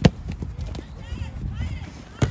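A sharp double knock at the very start, then faint shouting voices of players.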